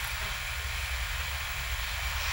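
Room tone: a steady low rumble with a faint even hiss and no distinct events.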